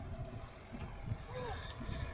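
Boots squelching through wet liquid manure, faint and irregular, with a brief faint call just past halfway.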